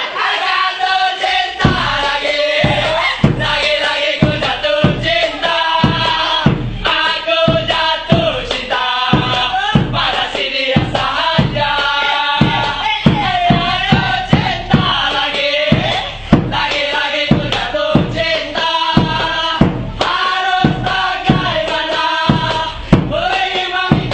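Kompang frame drums beaten in a steady, interlocking rhythm under a group of voices chanting in unison; the drums come in about a second and a half after the chanting starts.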